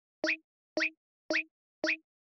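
Intro sound effect: four short, identical pops about half a second apart, each a quick upward chirp.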